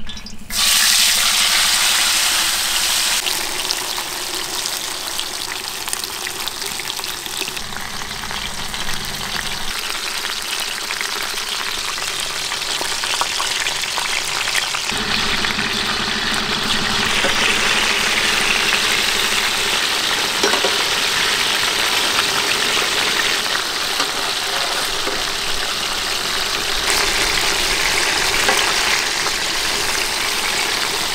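Hot oil in a large iron kadai sizzling around a whole masala-coated black pomfret: the hiss jumps up suddenly about half a second in as the fish goes into the oil, then keeps up a loud, steady deep-fry sizzle.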